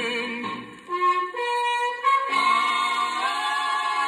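Orchestra and chorus music playing from a 1956 Capitol 78 rpm record, in long held notes. The level dips briefly about a second in, then the sound swells into held closing chords.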